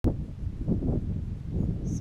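Wind rumbling on a handheld camera's microphone, cutting in suddenly as the sound starts, with some handling noise.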